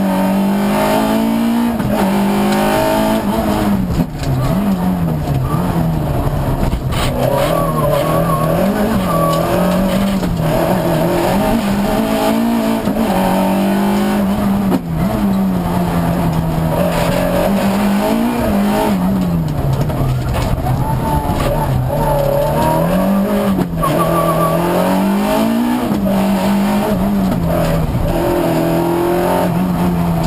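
Rally car engine heard from inside the cabin on a special stage, running hard with the revs repeatedly swelling up and dropping back every couple of seconds, over steady tyre and road noise.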